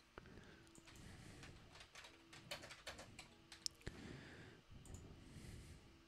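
Faint computer keyboard typing: a run of irregular, quiet key clicks.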